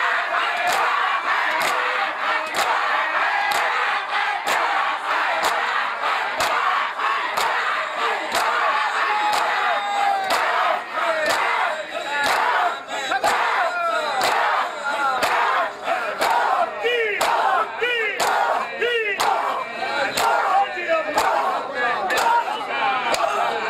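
A crowd of men doing matam, beating their bare chests with open hands in unison, a sharp slap about twice a second, under loud massed shouting and chanting voices.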